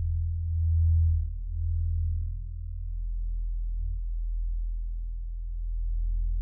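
A deep, steady electronic drone, a low held tone with a few faint overtones. It swells about a second in and again near the end.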